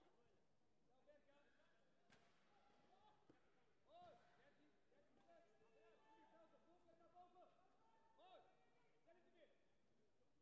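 Near silence with faint voices of people talking in a large sports hall, and one sharp click about two seconds in.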